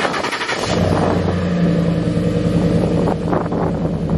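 Pickup truck's engine starting about half a second in, then running at a steady idle heard from the exhaust side.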